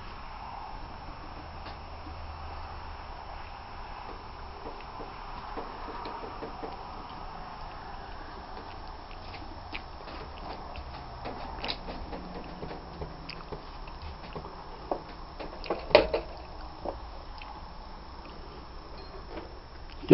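Faint steady room noise with scattered light clicks and small knocks, the loudest a short cluster of knocks about 15 to 16 seconds in.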